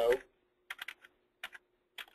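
Computer keyboard keys being typed: a few short, irregular runs of sharp key clicks as a surname is entered letter by letter.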